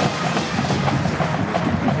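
Marching band drums and music playing in a football stadium, over crowd noise.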